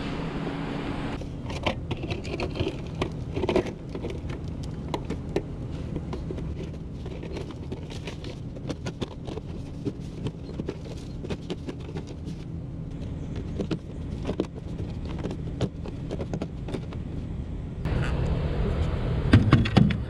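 Black corrugated plastic pipe clicking and scraping as it is handled and fitted over a buried wire conduit, over the steady low hum of an engine running, which grows louder near the end.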